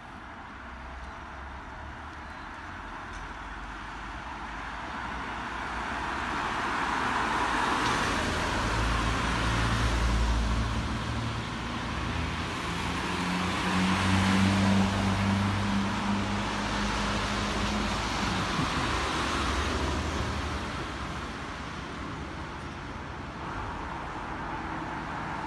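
Road traffic: cars driving past on a wet road, tyre noise and engine hum swelling and fading as they pass, loudest about ten and fifteen seconds in.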